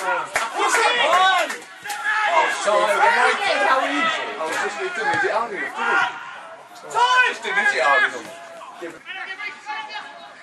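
Men's voices shouting and calling over one another, from football spectators and players during open play. There are a few sharp knocks near the start.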